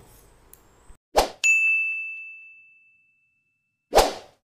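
Sound effects of an animated like-and-subscribe outro: a quick whoosh, then a bright bell-like ding that rings and fades away over about a second and a half, and another whoosh at the very end.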